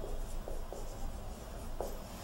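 Felt-tip marker writing on a whiteboard, the tip scratching and giving a few short squeaks as the letters are drawn.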